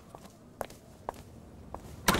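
A handful of faint, short taps, unevenly spaced, over a quiet background.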